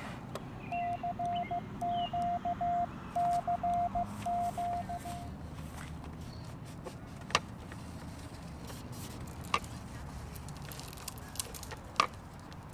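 Morse code sidetone from a YouKits HB-1B QRP CW transceiver: a steady mid-pitched beep keyed on and off in dots and dashes for about four and a half seconds as a CQ call is sent by hand. Later come two sharp clicks.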